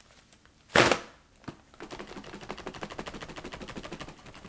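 Small handheld battery fan running with a fast, even ticking that starts a little under two seconds in. About a second in there is a single sharp burst of noise.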